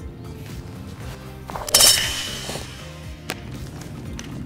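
A golf club smashing a Poco X3 phone in its case off a stack of bricks: a single sharp whack about two seconds in, with a brief click a second and a half later. Background music plays under it.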